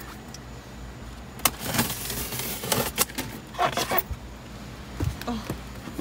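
Scissors cutting the strapping on a styrofoam shipping box, with box-handling noise: a few sharp clicks and snaps spread over several seconds.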